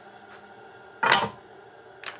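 Disc sander running steadily, with one short wooden clatter about a second in as the small wooden blocks are grabbed off its metal table.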